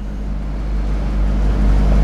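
A pause in the talk: a steady low hum with an even background hiss, and no voice.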